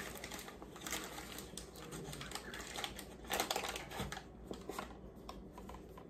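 Cardboard cornstarch box and the paper bag inside it being opened by hand: irregular crinkling and small clicks of paper and card, a little louder partway through.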